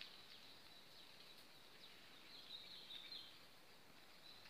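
Near silence: faint outdoor ambience, with a faint high-pitched chirping about two and a half seconds in.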